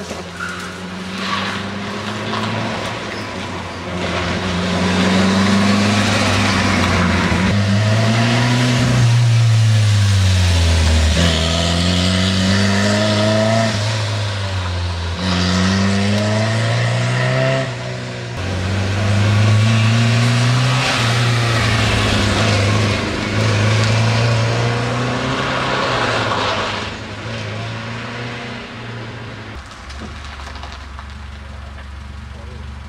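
Competition car engine revving hard on a slalom run, its pitch climbing and dropping again and again as the car accelerates, brakes and changes gear between the cones, with tyre noise on the loose surface. It fades near the end.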